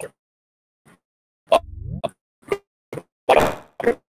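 A voice over a video call breaking up into short clipped blips about every half second: audio dropouts from a poor connection. A brief rising voiced sound comes at about the middle, and a louder burst of noise near the end.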